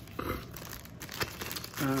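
Packaging crinkling and rustling as it is handled, with a few light clicks, then a short spoken 'um' near the end.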